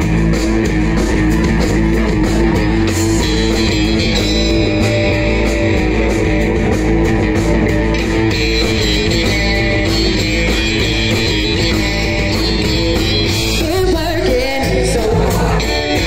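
Live rock band playing loud and steady: electric guitars, bass guitar and drum kit, with singing.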